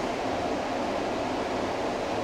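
Steady, even hiss of room tone in a pause between words, with no distinct event.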